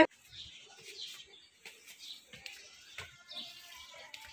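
Faint bird chirps: several short calls spread through, with a few soft clicks among them.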